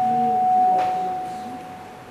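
Microphone feedback through the hall's PA: a single steady ringing tone that holds for about a second, then fades away.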